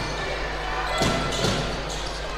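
A basketball dribbled on a hardwood court, two bounces about a second in, over the steady background noise of an indoor arena.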